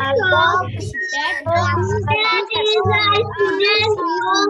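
Several children reading English sentences aloud at once in a sing-song chant, their voices overlapping, heard through video-call audio. A low electrical hum cuts in and out with the voices.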